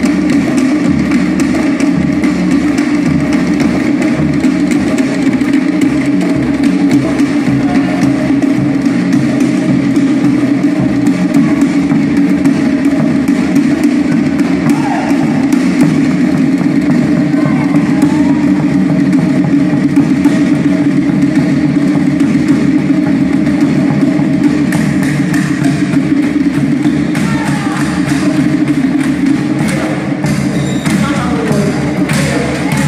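Live Tahitian drum ensemble playing a fast, unbroken rhythm: large cord-laced barrel drums struck with sticks, together with wooden percussion.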